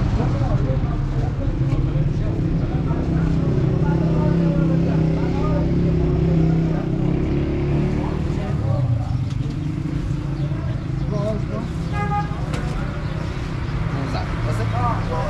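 Street noise with a motor vehicle engine running close by, a steady low hum that is loudest midway, under a murmur of voices. A short pitched beep sounds near the end.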